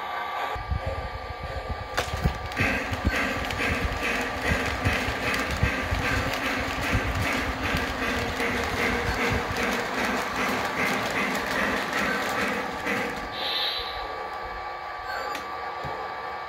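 Model freight train running on three-rail track: its wheels click steadily over the rail joints, a few clicks a second, over the rumble and hum of the locomotive's motor.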